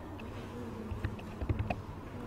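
Several light, scattered clicks, typical of computer keyboard keys or a mouse being used, over a steady low electrical hum.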